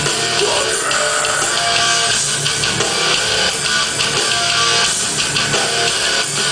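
Live hardcore band playing loud, steady rock with electric guitar and a drum kit, heard from the audience in a club.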